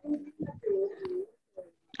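A dove cooing: a few low, even-pitched coos in quick succession, picked up over a video-call microphone.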